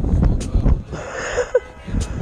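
Wind rumbling on the camera microphone, with a few sharp knocks as the camera is handled and moved.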